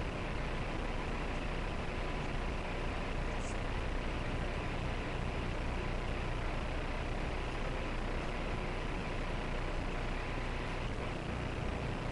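Steady hiss-like noise with a low hum and no voice: the live video-call audio has dropped out while the guest is in mid-sentence, leaving only line noise.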